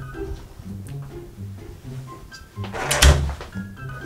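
Background music playing, with a single loud thump about three seconds in: a door being shut.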